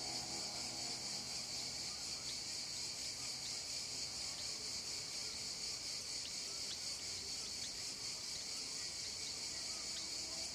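A steady, high-pitched chorus of chirring insects.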